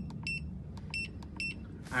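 Short, high electronic beeps from the PROTEAM Inverter iX heat pump's touch-button controller, each acknowledging a button press as the timer setting is stepped. There are about four beeps, in two quick pairs about a second apart, over a low steady hum.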